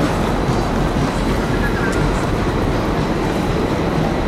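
Steady, dense noise of a busy city street, heard while walking along the sidewalk, with voices of passers-by mixed in.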